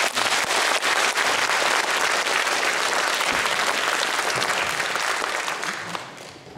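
Audience applauding at the end of a song, thinning out and fading near the end.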